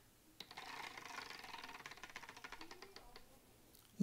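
Wooden prize wheel spinning, its pointer clicking rapidly against the wooden pegs around the rim. The clicks slow and stop about three seconds in as the wheel comes to rest.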